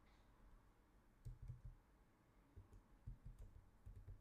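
Faint computer keyboard typing: a few scattered key clicks about a second in and again near the end, otherwise near silence.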